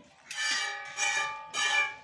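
Milk jets squirting into a steel milk can as a Murrah buffalo is milked by hand, the can ringing with each squirt. Three squirts come about 0.6 s apart, starting a moment in, each a hissing ring that fades before the next.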